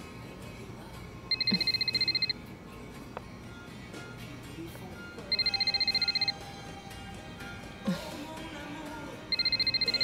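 Mobile phone ringing with an electronic trilling ringtone: three rings about four seconds apart, each about a second long, over soft background music.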